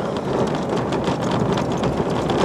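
Road and wind noise heard inside the cab of a Toyota Tacoma pickup driving on a snowy highway: a loud, steady rushing noise with a fine crackle.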